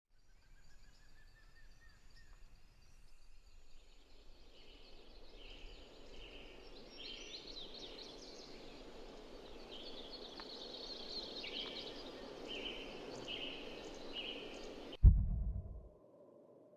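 Forest ambience: birds chirping again and again over a soft, steady background that slowly grows louder. Near the end comes one deep boom, the loudest sound, and the birdsong stops with it.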